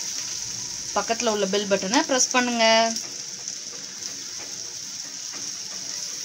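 Grated carrot and prawns sizzling in a hot pan while being stirred with a spatula, a steady high hiss throughout.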